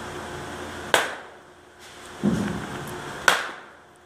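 Two sharp cracks of an Easton baseball bat hitting balls, about two and a half seconds apart, each ringing briefly as it fades.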